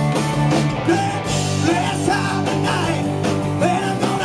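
Rock band playing live through a pub PA: electric guitars over steady bass notes and driving drums and cymbals, with a singer's voice.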